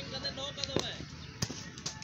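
Cricket bat striking the ball: sharp knocks, the clearest a little under a second in and another about half a second later.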